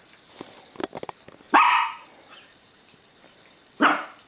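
A dog barks twice: one short loud bark about a second and a half in and another near the end, after a few light taps on the tiled floor.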